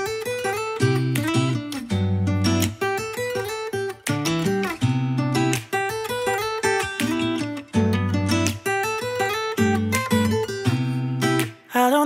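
Acoustic guitar strumming chords over a moving bass line, the instrumental intro of a pop song, with no singing.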